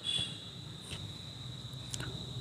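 A faint, steady high-pitched tone with a few soft clicks from the stripped wire ends of a submersible motor's winding lead being handled.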